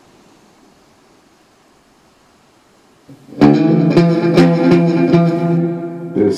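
Faint hiss, then about three seconds in an electric guitar through an amplifier comes in loud with a sustained ringing chord, struck again several times.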